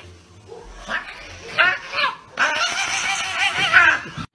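A pet animal's vocal calls: a few short cries about a second in, then a run of rapidly wavering cries through the second half, loudest near the end.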